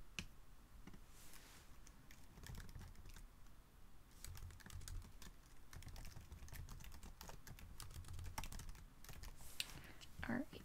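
Faint typing on a computer keyboard: a run of quick keystrokes, busiest in the second half.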